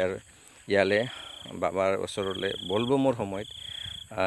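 A cricket trilling in three short runs of a rapid, high, evenly pulsed note, over a voice speaking.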